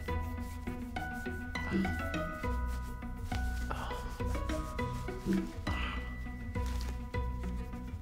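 Repeated rapid scratching: fingernails rasping over skin and shirt fabric. Soft background music with held notes runs underneath.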